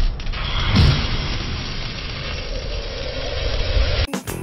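A mechanical sound effect under the title card: dense machinery-like noise with a deep falling sweep about a second in, cutting off sharply at the end.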